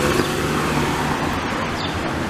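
A car driving past on the street: a steady rush of engine and tyre noise.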